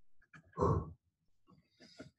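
A short voiced sound from a man, like a brief grunt or 'hm', about half a second in, followed by a few faint clicks.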